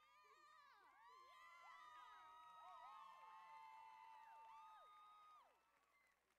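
Faint choir voices: many overlapping held notes sliding up and down in pitch, swelling about a second in and dying away near the end.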